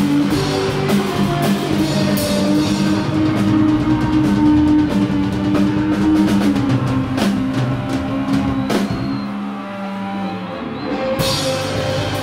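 Live rock band playing loud: electric guitar chords ringing over a drum kit with cymbal crashes. Near the end the drums and low end drop out for a moment, leaving the guitar ringing alone, then the drums come back in.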